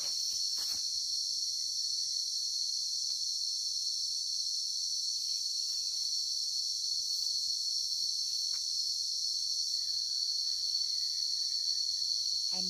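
A chorus of insects, likely crickets, keeping up a steady, unbroken high-pitched buzz, with a few faint rustles in the leaf litter.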